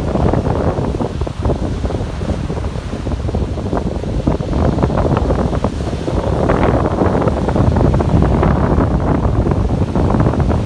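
Ocean surf breaking and washing up a sandy beach among rocks, with wind buffeting the microphone. The rushing grows louder about halfway through as a wave comes in.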